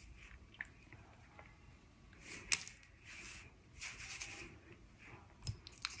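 Faint rustling of hair as fingers tousle and lift it at the roots, coming in a few soft bursts, with one small sharp click about two and a half seconds in.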